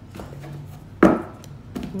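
Tarot cards being handled and shuffled: a few light knocks, then one loud, sharp slap about a second in.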